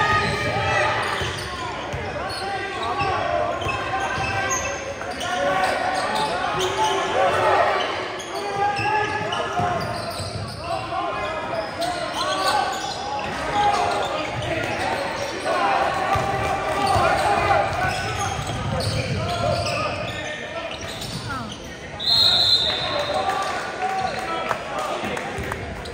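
Basketball game in a reverberant gym: voices of players and spectators, a basketball dribbling on the hardwood floor, and near the end a referee's whistle blown once for about a second.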